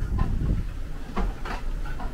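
A dry bag being handled, with a few short rustling scrapes of its stiff fabric about a second in, over a low steady rumble.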